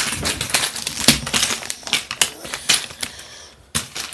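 Rapid clicking and rattling of small plastic Lego pieces being handled close to the microphone, busiest in the first three seconds, with a single sharp click near the end.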